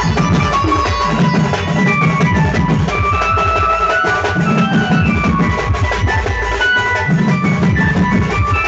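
Sambalpuri melody-party band playing loud, fast drumming under a high, sustained melody line, carried through a truck-mounted horn-loudspeaker rig.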